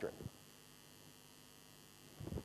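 Near silence after a man's single word right at the start: a faint, steady electrical hum with light hiss from the microphone and sound system.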